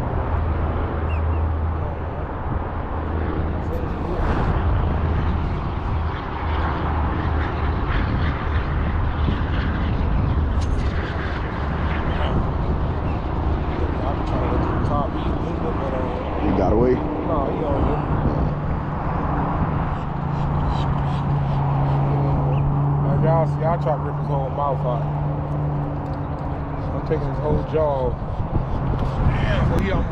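Wind buffeting the microphone in a continuous low rumble, with a steady low hum underneath that shifts to a higher pitch a little past halfway and fades near the end.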